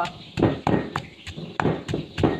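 Stone pestle pounding garlic, chilies and galangal in a heavy stone mortar, striking steadily about three times a second as the mix is worked into a paste.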